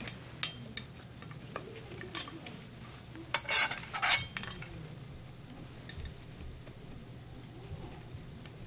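Plastic and metal parts of a disassembled Eureka vacuum cleaner motor being handled and pulled at by hand: scattered small clicks, and a louder cluster of scraping rasps between about three and a half and four seconds in.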